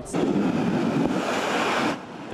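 A steady rush of water spray as a car drives through standing water on a flooded street. It starts just after the interview bite and cuts off suddenly just before the narration resumes.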